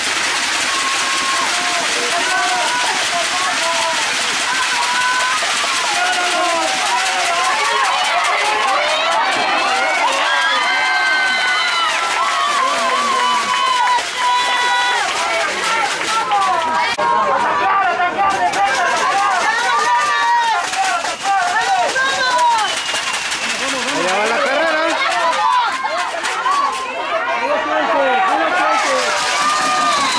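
Many voices of players and spectators shouting and talking over one another at an outdoor football game, with no single voice standing out.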